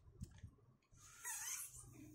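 Paper rustling and sliding against a stone countertop as hands press the folds of a paper plane. It makes one faint scrape, a little after a second in, lasting under a second.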